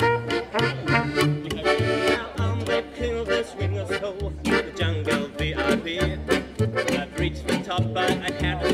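Acoustic gypsy swing trio playing: accordion over a plucked double bass giving about two low notes a second. A trumpet plays over it in the first two seconds or so, then gives way to a strummed acoustic guitar.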